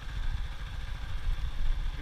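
A boda-boda motorcycle running along a dirt road, heard as a low, unsteady rumble of engine and wind on the camera microphone.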